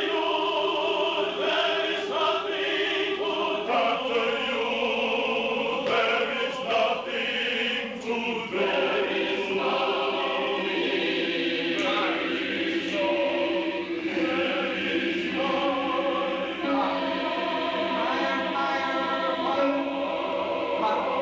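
A mixed choir of men's and women's voices singing a choral piece in several parts, with long held chords that change every second or two.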